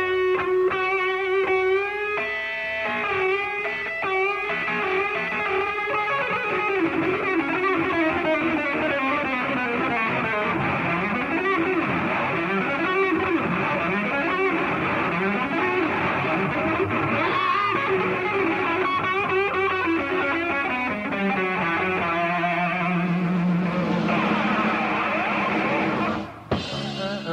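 Live concert music led by a distorted electric guitar solo, with long sustained notes that bend and waver over the band.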